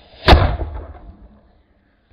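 A firework going off inside a rotting jack-o'-lantern: one sharp bang about a third of a second in, followed by a low rumble that fades over about a second, as the blast blows the pumpkin apart.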